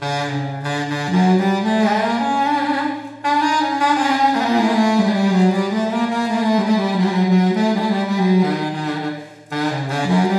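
Baritone saxophone playing long, low, slowly wavering held notes, with two short breaks, about three seconds in and near the end. A steady low drone sits beneath the saxophone throughout.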